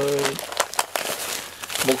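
A clear plastic packaging bag crinkling and crackling as it is handled in the fingers, in a run of small irregular crackles.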